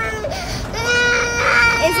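Toddler crying: a brief whimper near the start, then one long, steady wail held for over a second.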